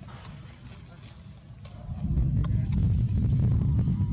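Low rumbling noise on the microphone, much louder from about two seconds in, with a few faint sharp clicks over it.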